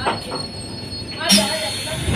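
Electric multiple-unit local train running, heard from an open doorway: a steady rattle and rumble with a faint steady high whine, and a short louder burst about a second and a half in.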